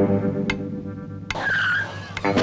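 Music holding a chord, broken off about a second and a half in by a short skidding squeal with a wavering high pitch.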